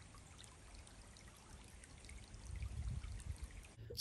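Faint trickle of running stream water, with a brief low rumble about two and a half seconds in.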